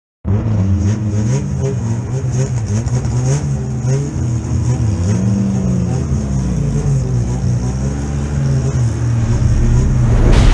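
A Hornet-class dirt race car's engine running, heard from inside the car's cockpit. It is near idle, with the revs rising and falling a little throughout.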